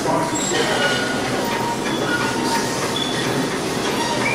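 Steady machinery-like noise with scattered short, high metallic squeals, typical of a themed attraction's mechanical sound effects around a prop gear wheel.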